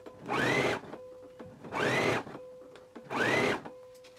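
Electric sewing machine running in three short bursts, each speeding up and slowing down, as it stitches a zipper tape in place with a zipper foot. A faint steady hum sounds between the bursts.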